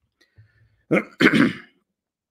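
A man clearing his throat, in two quick pushes about a second in.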